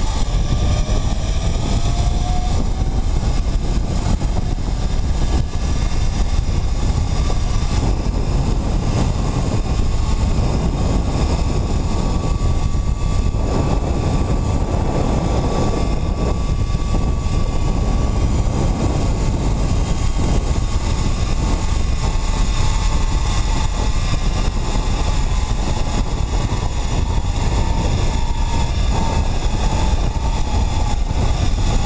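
Zipline trolley running along the steel cable with a thin, steady whine, over heavy wind noise buffeting the microphone at speed. The whine climbs in pitch over the first few seconds as the rider picks up speed and drops slightly near the end as the line slows them.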